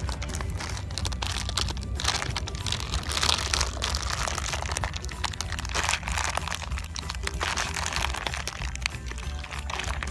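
Plastic candy wrapper crinkling and crackling in short bursts as it is worked open by hand, over background music.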